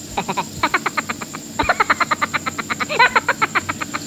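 A frog calling: two runs of rapid pulsed croaks at about ten a second, a short run and then a longer one after a brief pause.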